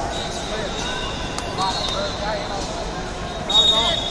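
Noisy wrestling-arena ambience: many overlapping voices shouting and calling from around the hall, with the loudest burst of shouting near the end.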